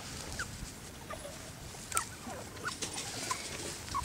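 Young puppies squeaking faintly, a scatter of short high squeaks and whimpers, with one brief click about two seconds in.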